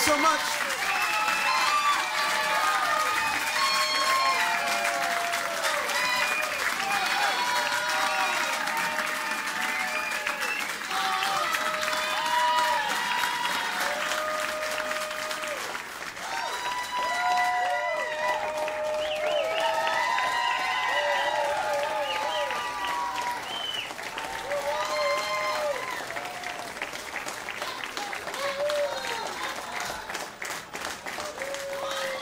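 Audience applauding and cheering after the last song, with many voices calling out over the clapping; the noise eases off gradually.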